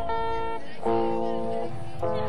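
Guitar playing in a live concert recording. One chord is struck at the start and another just under a second in, each left ringing.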